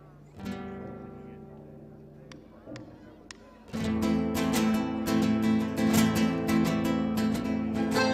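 Argentine folk ensemble of violin, accordion, guitar and bombo drum playing live on stage: a quiet guitar passage of a few single plucked notes, then nearly four seconds in the full group comes in loudly with rhythmic strumming and strong beats.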